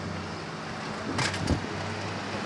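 Steady low mechanical hum, with two sharp knocks about a second in, the second one louder.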